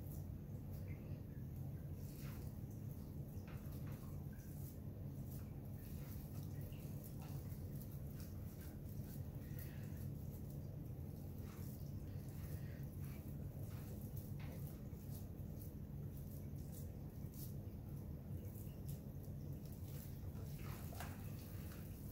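Faint scattered sticky clicks and squishes of hands rolling raw pork sausage up on a rolling mat, over a steady low hum.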